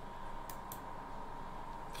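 Two faint computer mouse clicks in quick succession, about half a second in, over a low steady hum.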